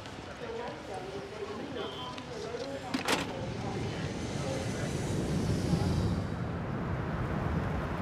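Busy street ambience with faint murmured voices and traffic. A single sharp clack about three seconds in comes as a payphone handset is hung up, then a low traffic rumble swells.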